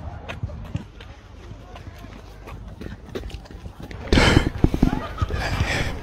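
A runner's footsteps on a paved path, light regular strikes a few times a second. From about four seconds in, loud heavy panting breaths close to the microphone.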